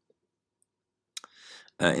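Near silence for about a second, then a single sharp click, followed by a short soft breathy hiss just before speech resumes.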